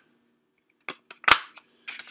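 Plastic DVD case handled: a couple of light clicks, then one sharp plastic snap about a second and a half in, as the case is shut.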